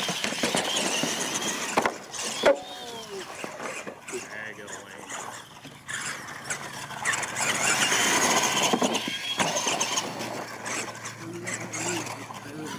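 Radio-controlled monster trucks racing, their motors and gears whining and shifting in pitch as they accelerate across the dirt, with a couple of sharp thumps about two seconds in as a truck lands off a ramp.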